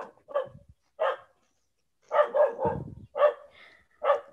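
A dog barking in a series of short barks with pauses between them.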